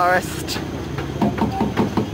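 A wavering, shaky "oh" cry from a girl's voice that breaks off just after the start, then people's voices talking low over a steady low hum.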